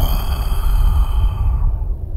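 Dramatic cartoon sound effect: a sudden high ringing sting with several overtones, held and fading near the end, over a steady deep rumble.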